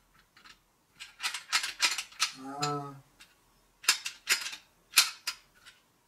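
Hand riveter being worked by hand: two bursts of sharp plastic-and-metal clicks and clacks as the tool is squeezed and fiddled with, with a short hum from the person in between. The riveter does not seem to be working.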